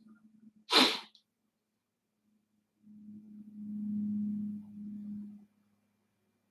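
A single sharp sneeze about a second in. A couple of seconds later comes a low, steady hum lasting about two and a half seconds.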